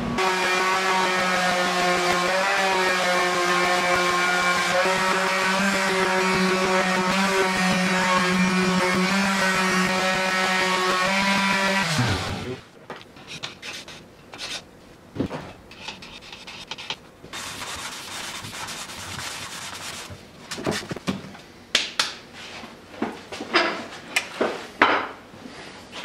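Steady hum of a motor-driven shop machine, which winds down with a falling pitch about 12 seconds in. After that come quieter rubbing and scattered clicks of hands working a curved hoop at the bench.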